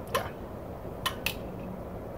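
Two short, sharp clicks about a second in, a fifth of a second apart, over a faint low steady background noise.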